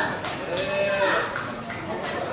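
Voices shouting and cheering in celebration, with one long drawn-out shout that falls in pitch about a second in.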